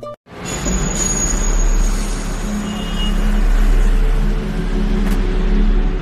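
Steady road-traffic noise, a broad rumble and hiss, with held low music notes underneath; it starts abruptly just after a moment's silence.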